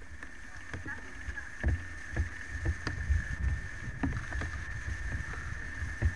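Handling noise on a handheld camera's microphone: a low rumble with scattered knocks, over a steady high-pitched tone.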